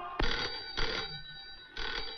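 Landline telephone ringing in short repeated rings, with a brief sharp knock just after the start.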